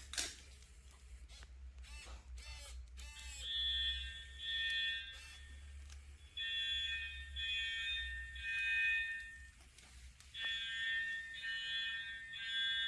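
Fire alarm beeping from the wildfire-detecting robot: electronic beeps about two-thirds of a second long, in groups of three with short pauses between the groups, starting a few seconds in after some clicks and brief whirs. The beeping signals that the robot has detected a fire.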